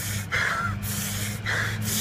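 A person gasping: two breathy gasps about a second apart, over a steady low hum.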